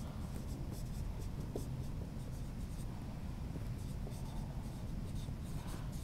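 Dry-erase marker writing on a whiteboard: faint, short scratchy strokes, coming irregularly.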